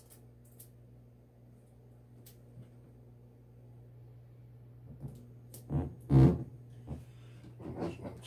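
Heat-transfer tape and a sublimation transfer being handled on a work table: a low steady hum, then a few sharp rasps and knocks about six seconds in, the loudest a short rasp like tape pulled off the roll.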